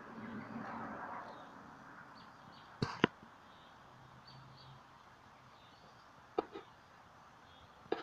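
Quiet outdoor ambience with faint, repeated high chirps. The loudest events are two sharp clicks about three seconds in, followed by a softer pair near the end.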